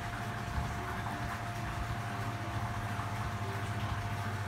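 A steady low hum with a thin, constant whine above it, unchanging throughout.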